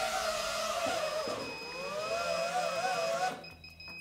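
Cinewhoop FPV drone's motors and ducted propellers whirring while it sits on the floor; the whine dips in pitch about a second and a half in, rises again, and cuts off near the end. The motors keep spinning with the throttle stick at its lowest position.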